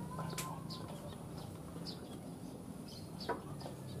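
Faint outdoor ambience of chickens clucking and small birds chirping. There is a sharp click about half a second in and another a little after three seconds.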